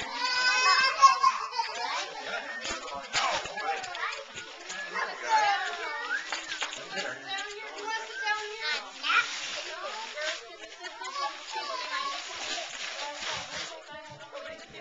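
Young children's high-pitched voices, babbling and squealing, with the crinkle of wrapping paper being handled and torn.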